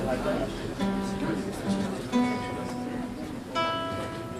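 Acoustic-electric guitar played fingerstyle: single plucked notes and chords ring out and fade over a low sustained note, with a brighter, sharper note struck near the end.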